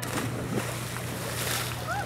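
A person jumping into cold pond water with a splash, then the water churning as several people splash and wade around them.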